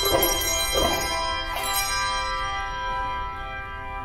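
Handbell choir ringing chords: three struck chords in the first two seconds, then the last chord rings on and slowly fades away.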